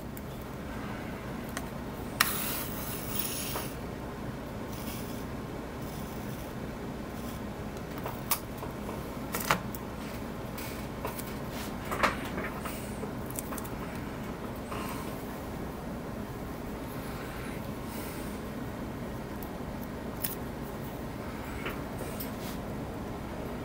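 Small handling noises while laying masking tape on a plastic model ship's deck: a short rasp about two seconds in and a few sharp clicks later, over a steady low hum.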